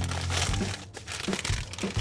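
A brown paper takeout bag being handled and crumpled, crinkling in bursts that are loudest in the first second, with a couple of soft knocks later on.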